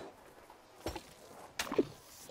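Two short sudden sound effects, about a second in and a louder one near the end, the second with a brief low gulp-like tone: cartoon Foley of an elephant scooping up an ice-cream sundae with its trunk and swallowing it whole.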